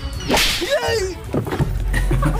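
A sharp whip-crack comedy sound effect about a third of a second in, followed by a short wavering, falling cry.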